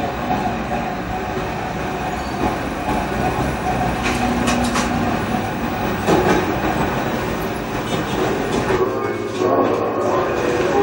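Steady rumbling noise with a few brief rattles about four to five seconds in, played through a television speaker and picked up off the set, with no clear music or words.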